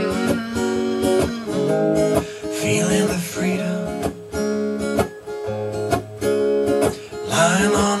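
Tom Anderson Crowdster acoustic-electric guitar strummed in a steady rhythm, playing a chord progression, amplified through a Bose L1 PA system.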